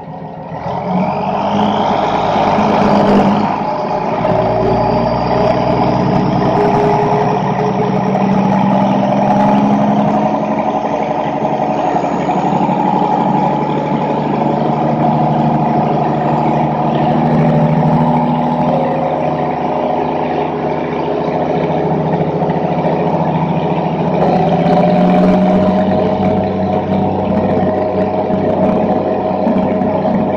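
Case 1455XL tractor's six-cylinder diesel engine revving up about a second in, then running hard and steady under heavy load as it drags a weight-transfer pulling sled down the track.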